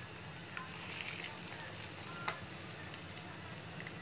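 Egg-and-breadcrumb-coated potato cutlets shallow-frying in hot oil in a nonstick pan: a steady sizzle with scattered small crackles, and one sharper tick a little after two seconds in.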